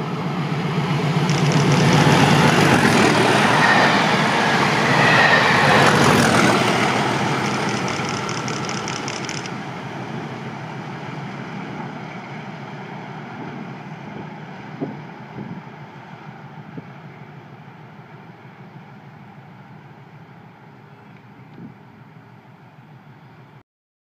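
A diesel test train hauled by two Class 37 locomotives passing at speed. The English Electric V12 engines and the wheels on the rails are loudest a few seconds in, then fade steadily as the train recedes.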